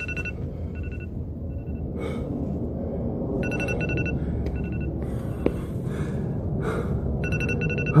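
Electronic timer alarm beeping in short bursts of rapid beeps, repeating every second or so with gaps, signalling that the minute is up. Between the beeps come heavy, gasping breaths from the exerciser.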